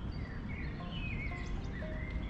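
Steady outdoor rush of wind and flowing water with birds singing in short, wavering calls, while a few soft music notes come in about a second in.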